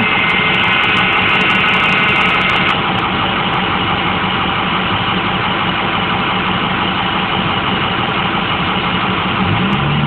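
Hydraulic leveling-jack pump running as the jacks retract to their stowed position, its high whine stopping about three seconds in, over a steady mechanical drone that goes on throughout.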